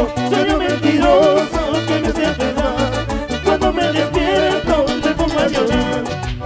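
Live Peruvian cumbia band playing: a pulsing bass line, melody lines from keyboard, guitar and voices, and quick, evenly spaced high percussion strokes keeping the dance beat.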